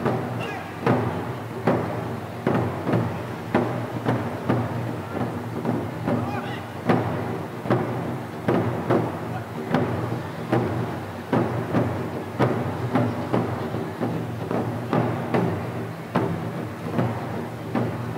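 Taiko drums struck in a steady rhythm, about one to two hits a second, each hit ringing on briefly.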